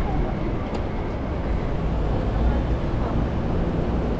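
City street ambience: a steady low rumble of road traffic, with indistinct voices of passers-by.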